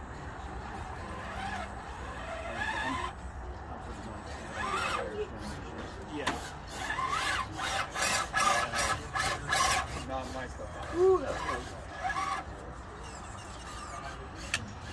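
Electric RC rock crawler on an Axial SCX10 II chassis with a Vanquish frame, driving over rocks: its motor and drivetrain running as the tyres scrape and clatter on stone. The clicking and rattling is busiest around the middle.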